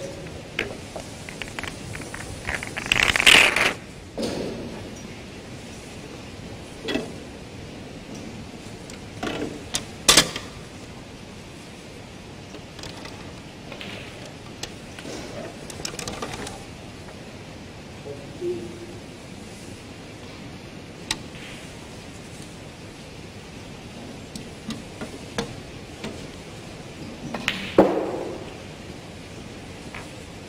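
Snooker balls clicking and knocking as they are taken from the pockets and set back on the table and into the triangle: scattered single sharp clicks, with a few louder knocks a few seconds in, about ten seconds in and near the end.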